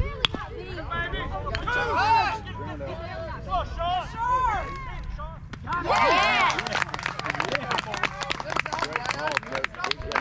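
Spectators shouting and cheering at a baseball game, with a single sharp crack just after the start. About six seconds in, the cheering swells loudly and is joined by rapid clapping that runs on through the rest.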